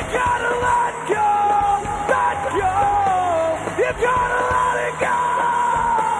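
Live rock band playing, with a male singer belting long held notes that slide in pitch over electric guitar and drums.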